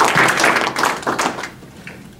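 A small group of people applauding, a dense patter of hand claps that dies away about one and a half seconds in.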